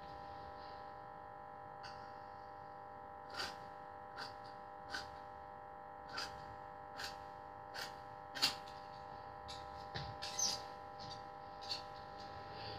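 A faint steady hum made of several held tones, with about a dozen short, sharp clicks at irregular intervals. The loudest click comes about two-thirds of the way in.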